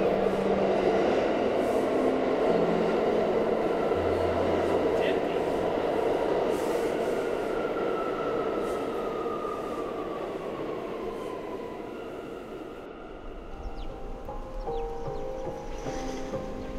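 Subway train running, a dense rumble that is loudest at first and slowly fades, with a whine that falls in pitch about halfway through.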